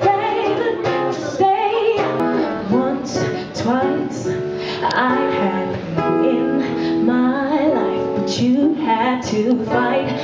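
A woman singing live into a microphone, accompanied by a strummed acoustic guitar.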